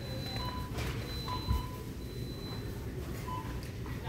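Shopping cart rolling along a store floor, a steady low rumble, with a few faint short high tones.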